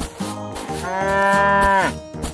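A cow mooing once: a single long moo of about a second that holds its pitch and then drops off sharply at the end, over background music.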